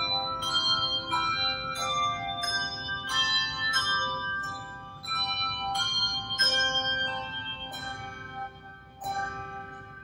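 Handbell choir ringing a piece in chords: each stroke sets several bells ringing, and the tones hang on and overlap as new strokes come every half second to a second. The ringing grows softer over the last couple of seconds, with one more chord near the end.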